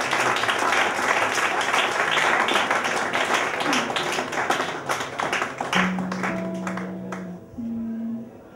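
Audience applause, dense at first and thinning out until it stops about a second before the end. A couple of held low notes sound over its tail.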